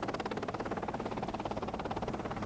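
Rescue helicopter hovering, its rotor making a steady, fast, even pulsing.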